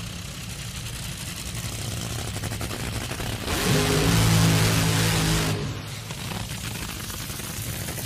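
A Top Fuel dragster's supercharged nitromethane Hemi V8 idling with a steady, lumpy rumble. It gets louder for about two seconds in the middle, then settles back.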